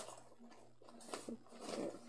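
A fabric bag being handled: a few short rustles and scrapes, the longest near the end, over a faint low steady hum.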